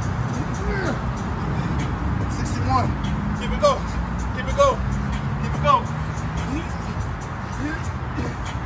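Short voiced grunts, about one a second through the middle of the stretch, over a steady low hum.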